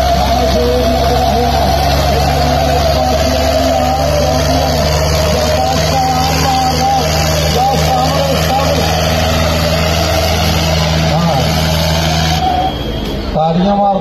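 Swaraj 855 FE tractor's diesel engine, with a second tractor's engine, running hard under full load as the two pull against each other in a tug-of-war. The steady drone breaks off about two seconds before the end.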